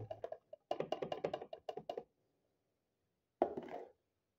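Whole almonds poured into the empty plastic bowl of a food processor, clattering in a quick run of small hard knocks for about two seconds, followed by a short burst of noise near the end.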